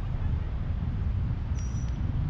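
Steady low rumble of outdoor street background noise, with a brief faint high-pitched tone near the end.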